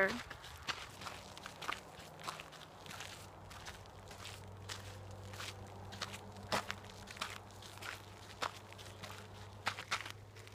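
Footsteps walking on a dirt trail: irregular soft crunches and scuffs, with a faint steady low hum underneath.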